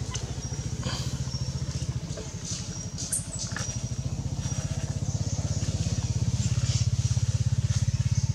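A small engine running with a fast, low, steady pulse, growing louder over the last few seconds.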